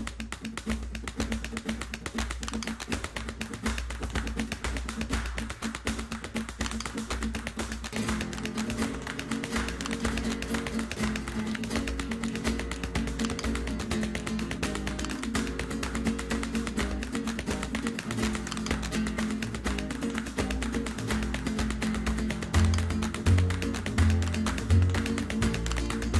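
Flamenco music with quick, sharp tap-dance steps on a wooden stage running through it. The music fills out about a third of the way in, and deep bass notes pulse near the end.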